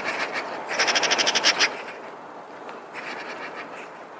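Eurasian magpie chattering: a harsh, rapid rattle of about a dozen notes in under a second, the loudest call about a second in, with shorter, fainter chatters at the start and about three seconds in.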